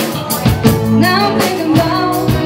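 Rock band playing: a woman singing over electric guitar, bass and a drum kit.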